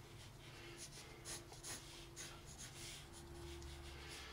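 Faint scratching of a graphite pencil drawing short, irregular strokes on sketch paper.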